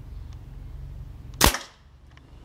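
A single shot from a pump-up pneumatic air rifle firing a pellet, about a second and a half in: one sharp crack with a short fading tail.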